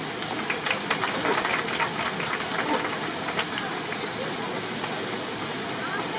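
Steady rushing hiss of water cascading down a stone waterfall wall, with a scattering of light taps in the first few seconds.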